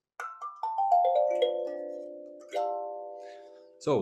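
Kalimba (thumb piano): a quick run of plucked tines falling in pitch, then, about two and a half seconds in, several tines struck together, ringing and slowly fading.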